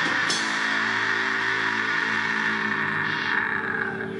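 Live metal band's distorted electric guitars holding one long, steady chord that rings on after the drumming stops just after the start.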